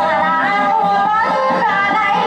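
Dayunday, a Maranao sung performance: a voice sings a wavering, ornamented melody with sliding pitch over instrumental accompaniment.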